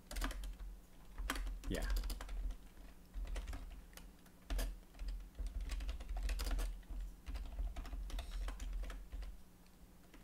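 Typing on a computer keyboard: irregular keystrokes in short runs.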